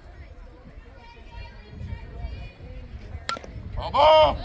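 Faint chatter from players and spectators at a softball field. About three seconds in comes one sharp smack of the softball at home plate as the pitch reaches the swinging batter, and a loud shout starts near the end.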